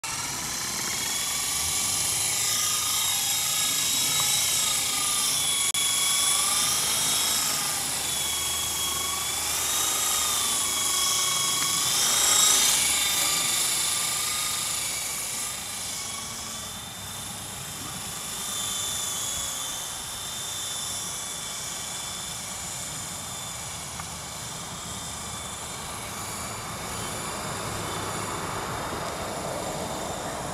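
Esky Honeybee CP2 electric RC helicopter in flight: a high motor-and-rotor whine whose pitch wavers up and down with the throttle. It is louder in the first half and fainter later on.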